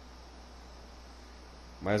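Low steady electrical hum with faint hiss in a pause between words; a man's voice starts again near the end.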